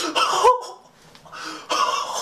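Excited bursts of laughter and gasping from one person: an outburst with a rising and falling pitch in the first half second, and another breathy one near the end.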